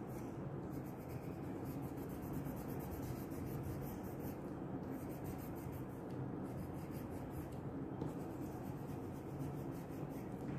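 Wax crayon rubbing back and forth on a paper sheet, colouring in a filled area with quick repeated strokes.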